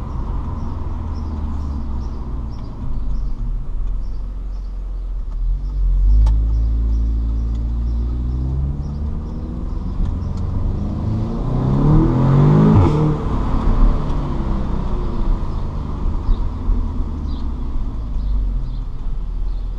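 Audi S3 Sportback's turbocharged four-cylinder engine heard from inside the cabin, pulling through town. It picks up about six seconds in, then revs harder and climbs in pitch a few seconds before the end before falling away. A faint regular ticking runs underneath.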